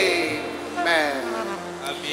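A singer's voice through a PA system holding long notes that slide slowly down in pitch: one fading in the first second, a second beginning about a second in. These are wordless vocal glides leading into a worship song.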